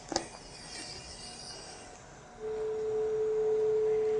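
A click and rustle as the endotracheal tube is handled, then, about two and a half seconds in, a steady single-pitch electronic tone from the bedside medical equipment starts and holds.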